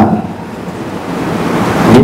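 A steady rushing hiss picked up by a headset microphone during a pause in speech, growing louder toward the end.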